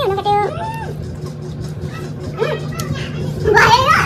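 Women's voices with background music; a burst of laughter near the end.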